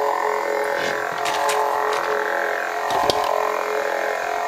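Lightsaber sound boards playing their steady idle hum through the hilt speakers, with a few light clicks and a soft knock about three seconds in.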